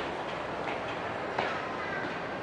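Steady background noise of a metro station, with a couple of footfalls on the stairs about a second apart and a faint thin tone near the end.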